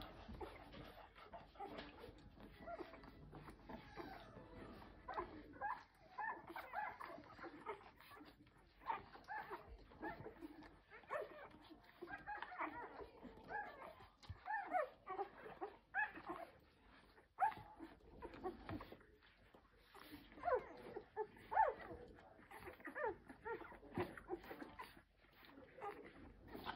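Ten-day-old golden retriever puppies squeaking and whimpering while nursing: many short, high, sliding cries, on and off, coming thicker in the second half.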